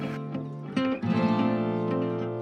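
Background music: acoustic guitar strumming chords, with a fresh strum about a second in.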